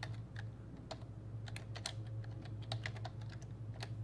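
Computer keyboard typing: an irregular run of short key clicks over a low steady hum.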